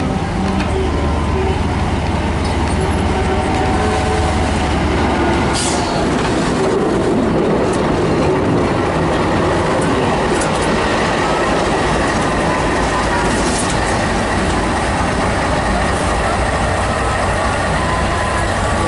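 Diesel engine of the T426 003 rack-and-adhesion shunting locomotive running steadily as it moves slowly past close by, with a deep drone and the rumble of its wheels on the rails. The low engine note is strongest for the first five seconds or so, and there are a few short high-pitched squeaks from the wheels along the way.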